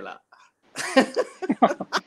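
A man breaking into hearty laughter just under a second in: a breathy start, then quick repeated laughs, about five a second.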